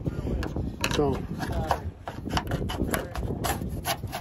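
Roof rain gutter trim strip being pried up and worked loose from its built-in retaining clips by hand: a run of irregular small clicks and rubbing, busier in the second half.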